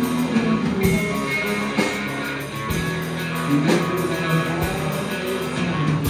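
Live rock band playing, with two electric guitars, bass guitar and drum kit. Drum hits land about once a second under sustained guitar notes.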